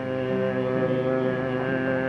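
Hungarian Christian song with one long held note over steady accompaniment, without a change of pitch, between sung lines.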